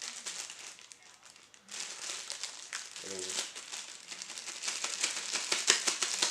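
Clear plastic bag crinkling as hands work a camera lens out of it. The crackling starts about two seconds in, runs dense and irregular, and is loudest near the end.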